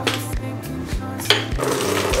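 Background music with a steady beat and bass line, with a brief sharp knock a little past halfway.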